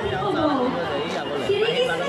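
Voices talking, with crowd chatter.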